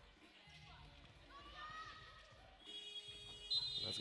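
Faint court and crowd sounds, then about three seconds in a long, steady high-pitched signal tone starts and holds, stopping play and the game clock.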